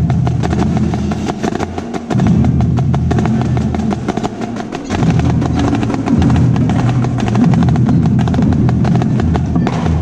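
Marching snare drum played close up with wooden sticks in fast strokes and rolls. A lower drum part sounds underneath and drops out briefly about two seconds in and again around four to five seconds.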